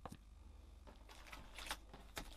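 Faint handling noise of packaged plastic embossing folders being moved and set down on a desk: a light click near the start, then a run of quick rustles and taps in the second half.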